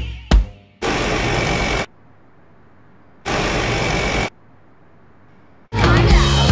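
The background music cuts out with a sharp hit. Then come two loud bursts of machine-like noise, each about a second long and about two seconds apart, with a faint hum between them. The music comes back near the end.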